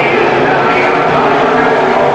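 Several IMCA modified dirt-track race cars' V8 engines running hard together, loud and steady, their overlapping pitches rising and falling as the cars work around the track.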